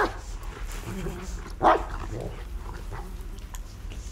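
Muffled whimpering cries from a person gagged with duct tape: two short, sharp ones about a second and a half apart, over a low steady hum.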